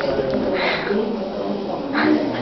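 A performer's voice making a drawn-out, wordless cat-like call rather than speech.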